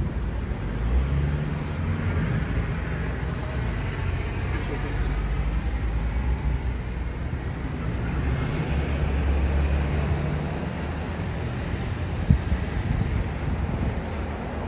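Street ambience: a steady low rumble of traffic and wind buffeting the microphone, with faint voices in the background. A single brief thump near the end.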